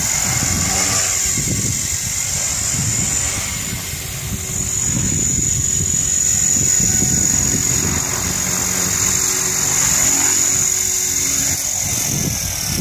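HK 450 electric RC helicopter running: a steady high-pitched motor whine over the rush of its spinning rotor blades. The whine eases off briefly about four seconds in, then comes back as the throttle rises again.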